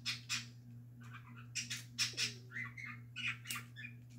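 Soft, breathy, squeaky laughter trailing off, mixed with a scatter of light plastic clicks from a K'nex claw model being handled.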